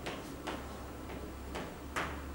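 Chalk on a blackboard: four or five short, sharp taps and strokes about half a second apart as a line is written.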